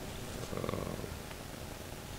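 Low, steady room noise in a pause between spoken phrases, with a faint soft sound rising briefly about half a second in.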